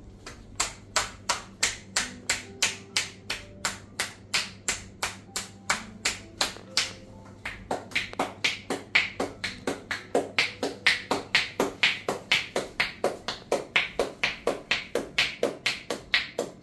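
A massage therapist's hands patting and tapping a man's back and shoulders in the closing percussive stage of a massage. The strikes come in a steady rhythm of about three a second, then quicken to about four a second about halfway through. Soft background music plays underneath.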